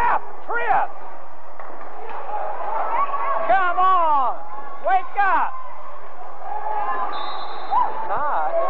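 Basketball shoes squeaking on a gym floor during play: a string of short, sharp squeaks that swoop up and down in pitch, over a steady background of gym noise.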